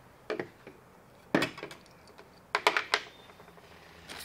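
Small hard figurine pieces and a plastic zip-top bag being handled: three short bursts of clicking and rustling about a second apart, the last a quick cluster.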